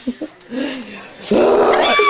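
A woman's loud, high-pitched laughter breaking out about a second and a half in, sliding down in pitch, after softer vocal sounds.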